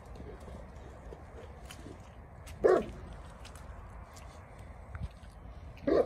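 A Neapolitan Mastiff barking twice: two single loud barks about three seconds apart.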